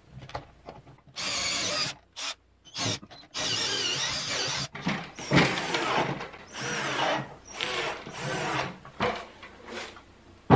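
Cordless drills boring into the wooden table frame in several runs. A steady run of about a second comes first, then two brief bursts and another run of over a second. From about halfway on come shorter, uneven runs with knocks.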